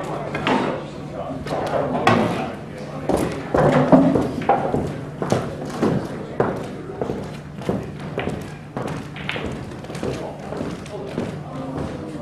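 Indistinct voices in a large room, with short knocks and clicks scattered throughout, and a low steady hum underneath.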